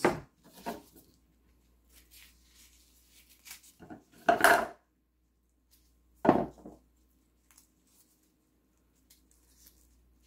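Avocado halves and knife handled on a wooden cutting board: scattered light knocks and clatter, with two louder knocks about four and six seconds in.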